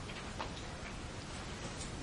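Steady hiss of room tone in a pause between spoken sentences, with a few faint, irregular clicks.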